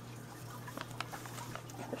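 Faint handling noises: a few light clicks and rustles as hands catch and set down a crocheted plush among marker caps on a craft desk, over a steady low hum.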